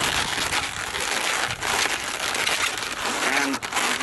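Inflated latex modelling balloons rubbing against each other and against the hands as they are twisted and pressed together at a joint, a continuous scratchy rubbing sound.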